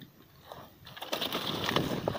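Stiff pineapple leaves and dry grass rustling and scraping as someone pushes through the plants. The crackling starts about a second in and keeps going.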